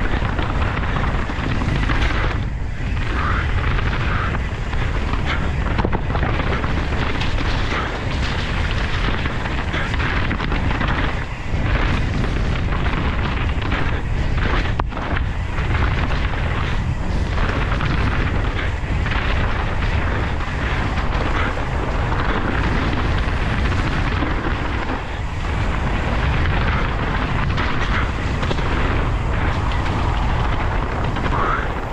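Steady wind buffeting on an action camera's microphone as a Canyon Strive enduro mountain bike descends a dirt trail at speed, with tyre noise and frequent short knocks and rattles from the bike going over bumps.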